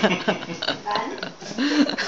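Indistinct low voice sounds from people in the room: short broken vocal noises rather than clear words.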